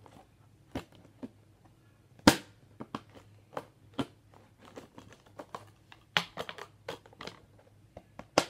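Hard plastic clicking and knocking as a plastic sandwich container lid holding plastic utensils is handled and turned over: a string of sharp separate clicks, the loudest about two seconds in, with a quick cluster of them around six to seven seconds.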